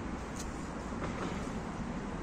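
Steady hum of city road traffic in the background, with a brief faint click about half a second in.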